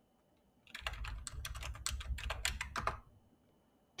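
Computer keyboard typing: a quick run of a dozen or so keystrokes that starts under a second in and stops about three seconds in, as the command "trimmomatic" is typed into a terminal and entered.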